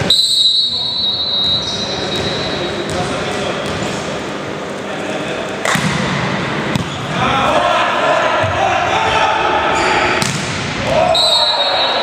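Volleyball rally in a large echoing hall: a referee's whistle for about a second and a half at the start, the ball struck about six seconds in and again near ten seconds, players shouting, and a second whistle near the end.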